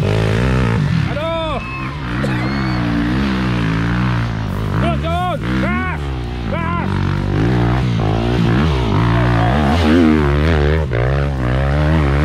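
Several trail motorcycle engines revving unevenly under load as riders force them up a steep dirt climb, with people shouting over them.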